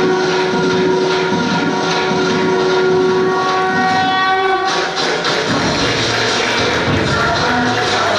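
Recorded music played over a loudspeaker: one long held note for about the first four and a half seconds, then a busy drum rhythm takes over.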